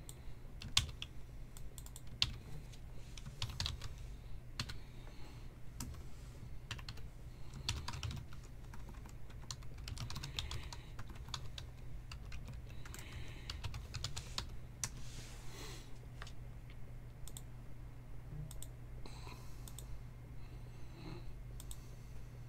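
Typing on a computer keyboard: irregular runs of key clicks with short pauses, over a steady low hum.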